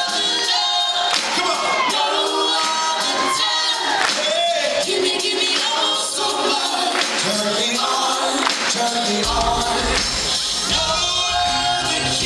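A live band playing with sung vocals, recorded from the audience at a concert. The bass drops out for most of the stretch and comes back in strongly about nine seconds in.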